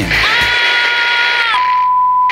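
Analog television static hiss with a few steady tones in it, cutting off about one and a half seconds in to a single steady high beep like a broadcast test tone.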